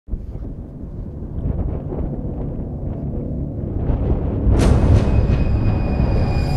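Opening soundtrack of a film intro: a low rumble that grows louder, with a sudden hissing swell about four and a half seconds in, followed by faint held tones.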